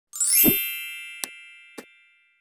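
Logo intro sound effect: a bright chime that sweeps up and strikes with a low thump in the first half second, then rings on and slowly fades. Two short clicks come about a second and a quarter and a second and three quarters in.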